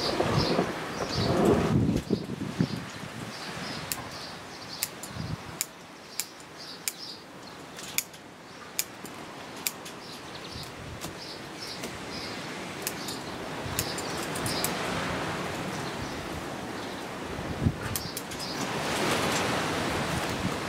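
Bonsai pruning scissors snipping shoots on an elm bonsai: a dozen or so short, sharp clicks at irregular intervals, with rustling of the small-leaved foliage. Birds chirp faintly in the background.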